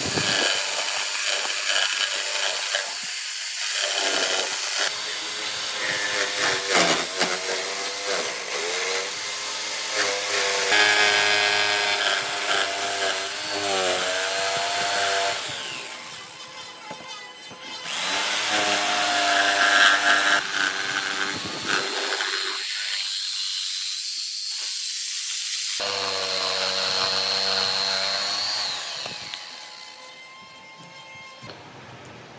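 Makita jigsaw cutting a heart-shaped opening in a wooden board, its motor running with the pitch shifting as the blade works around the curves, easing off briefly twice partway through.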